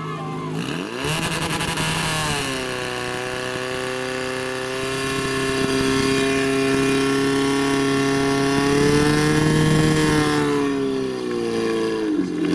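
Portable fire pump engine revving up about a second in, then held at high, steady revs under load while it pumps water through the attack hoses. Its pitch drops near the end.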